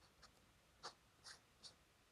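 Fountain pen nib scratching on paper in four short, faint strokes as a word is finished and a box is drawn around it.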